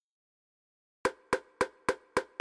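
A single electronic percussion sample in FL Studio (the MA MachineCity Perc hit) triggered over and over, starting about a second in: short dry hits at about three and a half a second.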